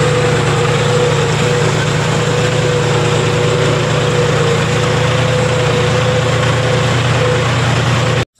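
John Deere tractor engine running steadily under load as the tractor drives through a flooded paddy field, heard close up from the seat, with the front wheels churning through muddy water.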